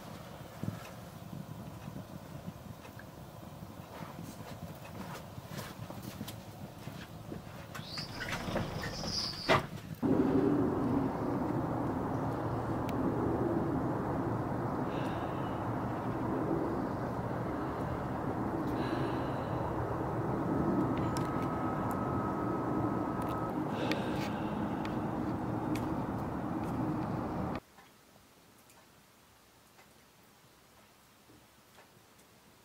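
Wood fire crackling in a hearth, with scattered sharp pops. About ten seconds in, a much louder, steady noise takes over, and it cuts off suddenly near the end.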